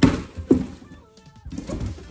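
Two knocks about half a second apart from a cardboard parcel being cut open with scissors, with background music under them.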